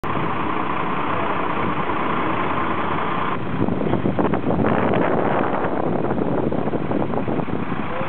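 Truck-mounted hydraulic crane running as it lifts and swings its load: engine and hydraulics make a steady noise with a whine that stops a little over three seconds in. After that the sound is rougher and uneven, with scattered short knocks.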